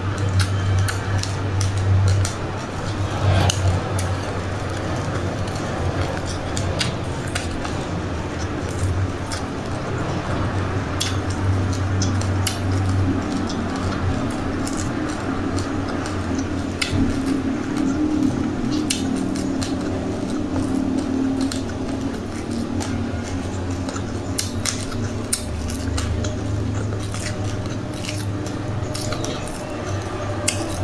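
Crunchy close-mic chewing of frozen passionfruit pulp coated in black and white sesame seeds, with many sharp crackling crunches and a plastic spoon clinking and scraping in a glass cup, over a steady low hum.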